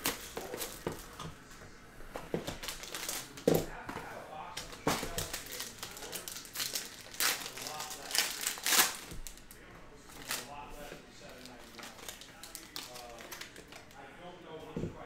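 Clear plastic wrapping crinkling, with many sharp irregular crackles and clicks, as hands unwrap a sealed trading-card box.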